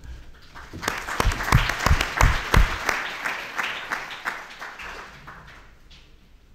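Audience applauding a speaker at the end of a talk. The clapping builds over the first second, is loudest in the middle, then fades away toward the end.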